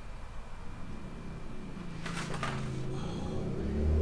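Quiet room with a faint low hum and a soft, brief rustle about halfway through. Low notes of background music fade in and grow louder near the end.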